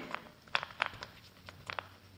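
Several soft, separate taps of a small paint roller's end dabbing paint through a stencil onto a wooden cabinet door.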